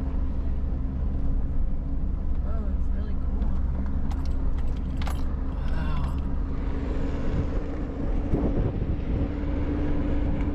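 Vehicle cabin noise while driving slowly on a rough dirt road: a steady low engine and tyre rumble, with a cluster of clicks and rattles about four to six seconds in.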